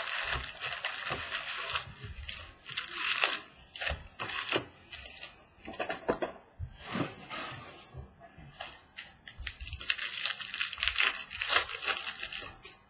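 Cardboard box of trading-card packs being opened and the wrapped packs handled and torn open: bursts of crinkling and rustling, with small clicks and knocks in between.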